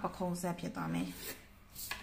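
Ballpoint pen scratching along a plastic ruler on paper as a straight pattern line is drawn, with a woman's voice over the first second and a short click near the end.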